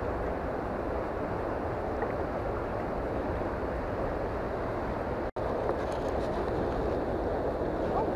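Steady rushing noise of flowing water in a current, even throughout, cutting out for an instant about five seconds in.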